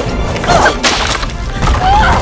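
Film-score music under animated action sound effects, with a sharp impact a little under a second in and short gliding squeaks around it.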